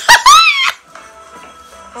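A man's loud, high-pitched squeal of laughter, under a second long, rising and then falling in pitch; quieter background music from the TV episode follows.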